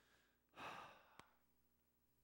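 A man's sigh into the microphone: one breathy exhale about half a second in, fading out, followed by a single faint click.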